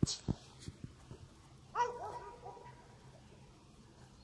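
A dog gives one short, high-pitched yip about two seconds in, after a few soft thumps at the start.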